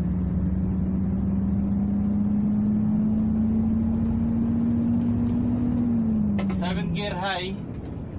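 Mercedes-Benz Actros truck engine heard from inside the cab, pulling under way with its pitch rising slowly, then dropping about six seconds in.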